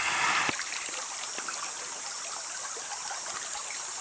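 Rainforest background: a steady high-pitched insect drone over an even hiss, with a few faint clicks.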